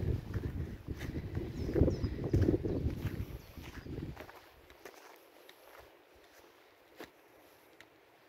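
Footsteps of someone walking on grass, with low rumbling noise on the microphone, for about the first half. The rest is quiet apart from a few faint clicks.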